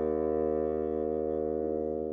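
Chamber music for bassoon and piano: a single chord held steadily, slowly fading away.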